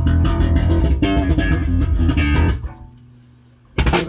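Electric bass and guitar playing a riff through amplifiers, which stops about two and a half seconds in; after a short, quieter gap the music comes back in loudly just before the end.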